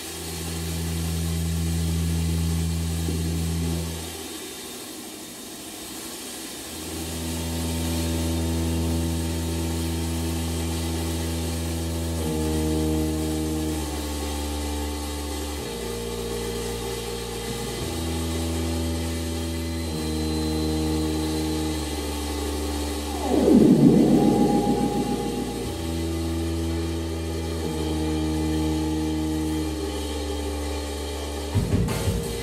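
Synthesizers holding low, steady drone notes that step to new pitches every second or two, over a constant hiss. Near the end, a swooping, bending electronic sound rises briefly above them as the loudest moment.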